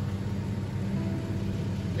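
A vehicle's engine idling with a steady low hum.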